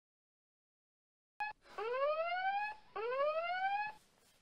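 An electronic alarm-like sound: a short tone about a second and a half in, then two whoops that each rise in pitch for about a second.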